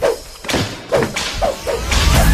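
Sound effects of a TV channel's intro ident: a run of five sharp swishes, each landing with a thud, about half a second apart and coming a little quicker toward the end.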